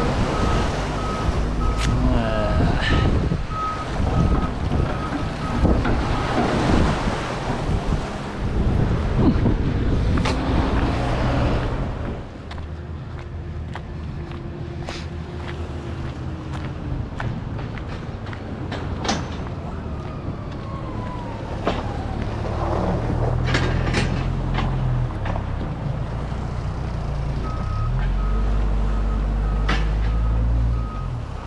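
Loud rushing wind noise on the microphone, then a motor engine running at low revs, its pitch shifting a couple of times. A short, evenly repeating beep sounds at the start and again near the end.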